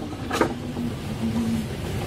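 The laser head carriage of a DIY CO2 laser cutter being slid by hand along its gantry rail: a low rumbling slide with a short click about half a second in.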